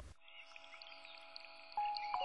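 Soft background music of held notes with light twinkling sounds, growing louder near the end as new notes come in.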